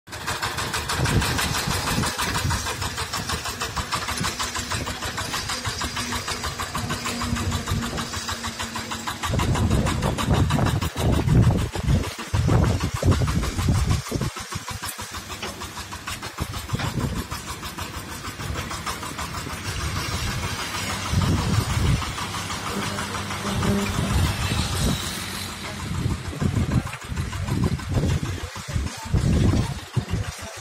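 VST Shakti power tiller's single-cylinder diesel engine running with a rapid, even chug as it pulls a stone-weighted rake attachment through loose soil. About nine seconds in its note turns louder and heavier, then rises and falls as the load and throttle change.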